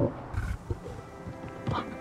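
A stag gives a few short, low grunts near the start, over soft film score music that carries held notes through to the end.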